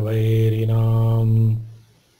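A man chanting Sanskrit verse holds the last syllable of a line on one steady low note, then lets it fade out about a second and a half in. After that there is a near-silent pause.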